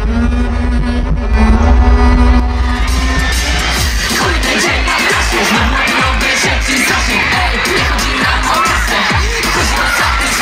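Live concert music: a bowed double bass holds a long note over a deep bass drone. About four seconds in, a beat of low thuds about two a second comes in, with the crowd cheering over it.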